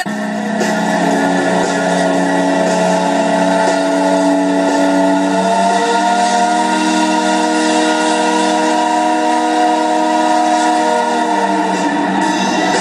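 The Delta Queen riverboat's steam whistle blowing one long blast, a chord of several steady tones sounding together that starts abruptly. The chord shifts slightly upward in pitch about halfway through.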